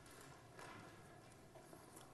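Near silence: faint lecture-hall room tone with a few soft taps.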